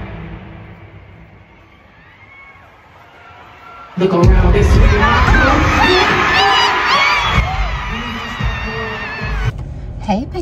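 Stadium concert crowd with amplified music: the music fades down over the first couple of seconds, then about four seconds in a loud burst of many voices screaming and singing along breaks out over heavy bass thumping from the sound system, easing off after a few seconds.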